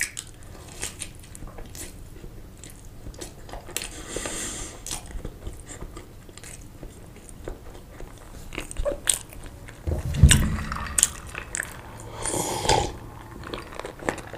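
Close-miked chewing of a sausage, with many small wet mouth clicks and a few louder chewing moments about ten and twelve and a half seconds in.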